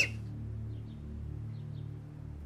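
Soft background score: a low sustained drone that holds steady, with a few faint high chirps about a second in.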